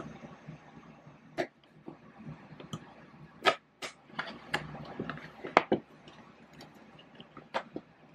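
Handling of a cardboard LEGO advent calendar box and its small plastic pieces: about half a dozen irregular sharp clicks and taps over a low rustle.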